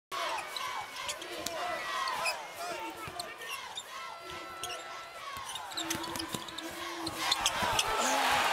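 Basketball being dribbled on a hardwood court, with sneakers squeaking in short chirps and arena crowd noise that swells slightly near the end.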